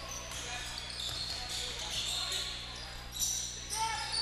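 A basketball being dribbled on a hardwood gym court, with indistinct voices of players and crowd in the background.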